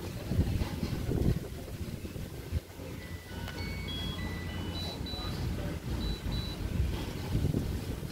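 Low, uneven rumble of wind and handling on a phone microphone. From about three seconds in, a string of short, clear, high notes at changing pitches sounds for about three seconds, like a little electronic tune.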